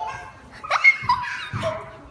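A young child's high-pitched squeals: a sharp cry rising steeply in pitch about two-thirds of a second in, the loudest moment, followed by shorter pitched cries.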